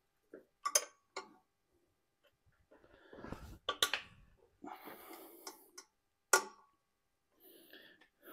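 A few sharp metallic clicks of a flank drive combination wrench on the tight 10 mm bolts holding down a 7.3L Powerstroke's turbo, with softer scraping and rustling between them.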